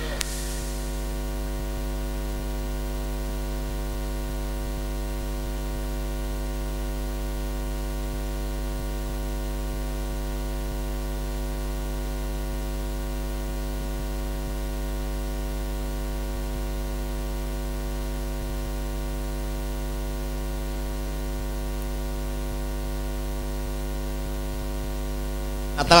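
Steady electrical mains hum with a buzz of many evenly spaced overtones, unchanging throughout.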